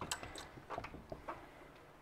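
A few faint, scattered clicks and ticks in a quiet room as steel-tip darts are pulled out of a bristle dartboard.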